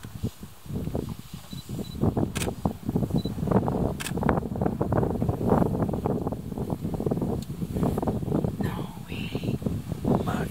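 An African elephant close by, tearing up grass with its trunk and chewing it as it moves through the grass: a dense, irregular rustling and crackling that starts about half a second in. Two sharp clicks stand out early on.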